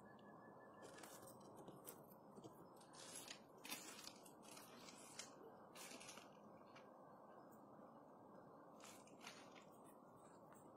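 Near silence with faint, scattered crunching clicks: a domestic cat chewing on food and shifting about on wooden slats.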